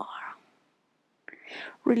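A woman's breathing between spoken cues: a breathy trailing exhale in the first half second, a short silence, then a small lip click and a quick breath in just before she speaks again.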